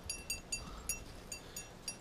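Dog's metal collar tags jingling in a string of light, irregular clinks as the dog moves about while being petted.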